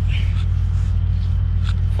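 Steady low engine drone, an even hum that holds without change, from an idling engine running nearby.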